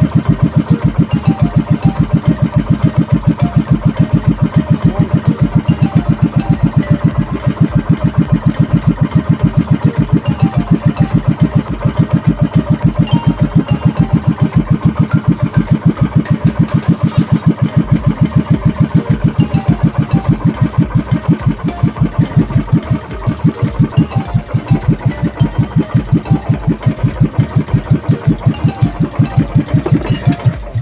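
Outrigger boat (bangka) engine running at a steady cruising speed, with a loud, even train of rapid exhaust beats. The beat wavers briefly about two-thirds of the way in.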